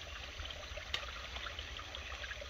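Faint, steady rush of a small woodland creek flowing.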